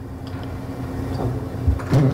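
Room tone picked up by the chamber's open microphones: a steady low hum over a low rumble, with a soft bump near the end.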